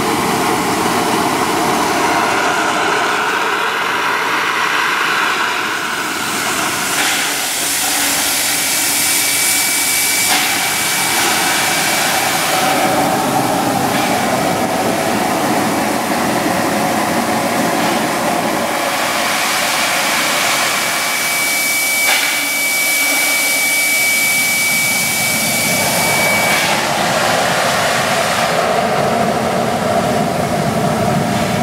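Boiler blowdown on a wood-fired Baldwin steam locomotive: steam and boiling water blasting out of the blowdown valve in a continuous loud rushing hiss, purging sediment from the boiler. A thin steady high tone sounds through the middle of the blast, and there is one brief click near the end of it.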